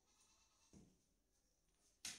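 A short, faint bleat-like cry about three-quarters of a second in.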